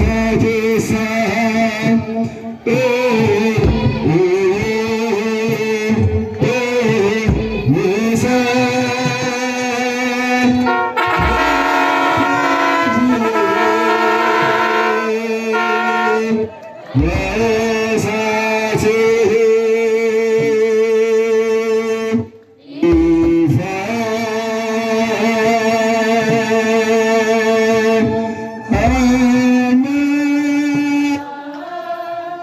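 Ethiopian Orthodox hymn (faaruu) sung by a group of voices in Afaan Oromo, in long held, wavering notes, with a kebero hand drum beating. The sound breaks off briefly a little past two-thirds of the way through.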